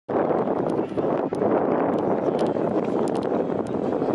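A cloth flag flapping in the wind, a steady rush of wind with many small sharp snaps of the fabric.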